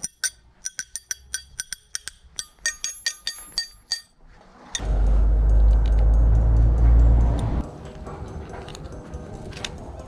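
A bicycle rear wheel's freewheel clicking rapidly with a metallic ring for about four seconds. Then a loud low rumble of handling noise lasts about three seconds, followed by softer rustling and a few clicks.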